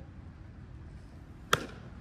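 A baseball bat striking a pitched ball: one sharp crack about one and a half seconds in, with a brief ring after it.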